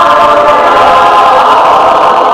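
Mixed choir of men's and women's voices singing, holding long sustained chords.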